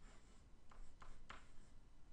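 Faint scratching of a stylus writing on a tablet, in a few short strokes as a square-root sign and a number are drawn.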